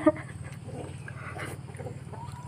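A woman laughing: a short loud burst right at the start, then only quiet, scattered sounds over a steady low hum.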